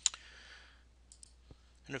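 A sharp click right at the start, followed by a soft breath lasting under a second and a couple of faint ticks, as the narrator pauses before speaking. A man's voice starts near the end.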